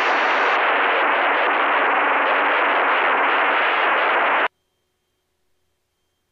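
Steady radio static hiss over the aircraft's headset intercom audio. It cuts off suddenly about four and a half seconds in, leaving near silence.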